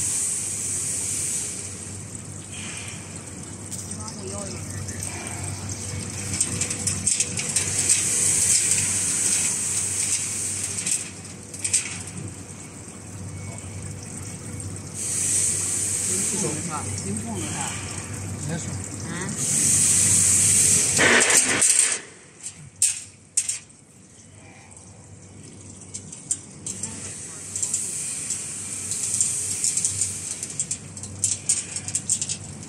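Automatic chain link fence machine running, forming and weaving wire spirals into the mesh: a steady mechanical hum with repeated hissing surges. The running stops abruptly about 22 seconds in, leaving a few sharp clicks.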